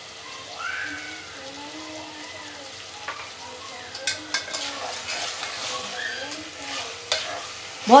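Chicken and potato pieces frying in a steel pot with a low, steady sizzle while salt is shaken in. From about halfway, a metal spoon stirs the pot, scraping and clicking against the steel.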